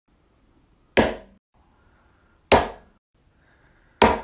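Two sharp chops about a second and a half apart: a katana blade striking down onto a cutting board.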